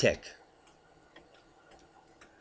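Faint, irregular light clicks at a computer desk, a few scattered through a pause, after the end of a man's spoken word.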